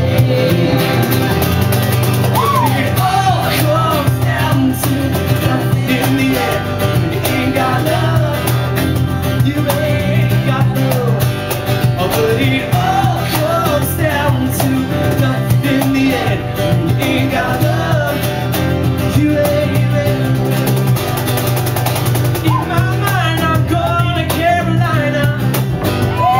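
Live band playing a stretch of the song without words, with a lead line sliding up and down in pitch over steady low notes and sharp hits throughout.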